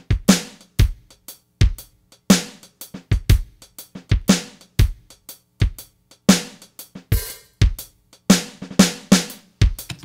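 Sampled drum kit from a General MIDI synth playing a shuffle groove of kick, snare and hi-hat, passing into a drum fill. A cymbal wash comes around seven seconds in, and the drumming stops just before the end.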